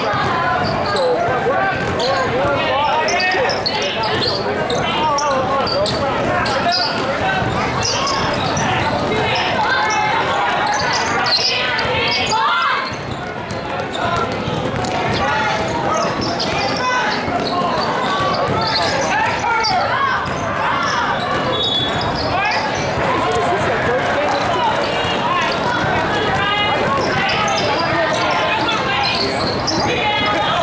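A basketball being dribbled and bounced on a plastic tile court during a game, under continuous shouting and chatter from players and spectators in a large hall.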